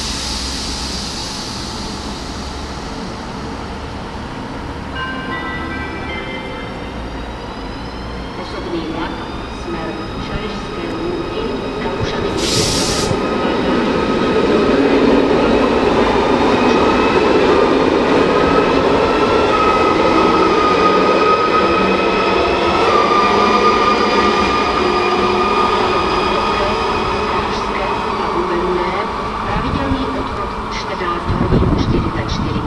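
ZSSK class 671 double-deck electric multiple unit pulling away: its traction drive whines in tones that climb in steps of pitch as it starts, then hold steady. The rumble of the wheels on the rails grows as it passes, loudest around the middle, with a short hiss about twelve seconds in.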